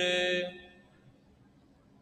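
A man's chanting voice holds the last note of a recited couplet at a steady pitch, then fades out about half a second in, leaving near silence.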